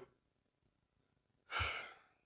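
A man's sigh: one short, breathy exhale into a close microphone, about one and a half seconds in.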